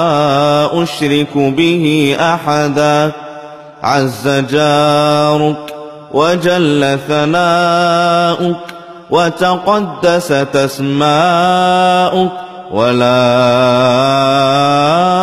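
A solo male voice chanting Arabic ruqyah supplications in a slow, melodic recitation style. The notes are long, held and wavering, broken by a few short pauses for breath.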